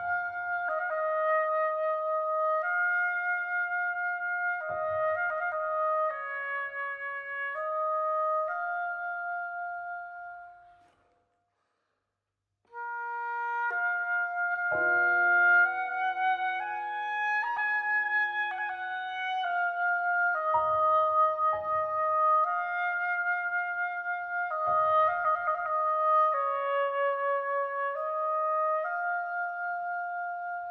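Oboe playing a slow Persian folk melody in long held notes over sparse piano chords. The music stops for nearly two seconds just before the middle, then resumes with the oboe and piano together.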